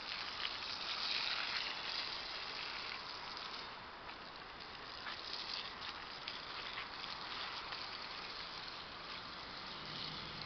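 Water spraying from an adjustable nozzle on a garden hose onto the soil and plants of a raised bed, a steady hiss.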